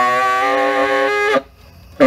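Tenor saxophone playing one long held note, steady in pitch, that stops about a second and a half in; after a short breath pause the next note starts at the very end.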